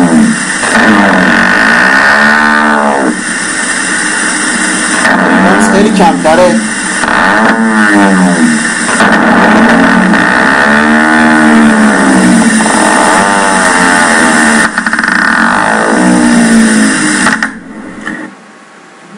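EMG loudspeaker sound of a myotonic discharge: repetitive muscle fibre potentials firing at changing rates, heard as a series of whines that rise and fall in pitch and loudness, each a second or two long, like a car engine. It cuts off shortly before the end.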